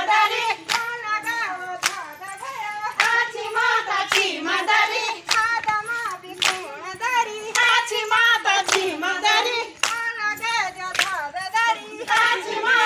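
A group of women singing a Garhwali folk song for the chaufula circle dance, with sharp hand claps in time about once a second.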